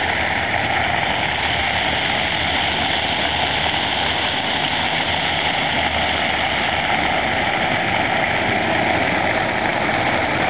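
Ground-nozzle fountain jets spraying upward and splashing back down onto wet pavement: a steady rush of falling water.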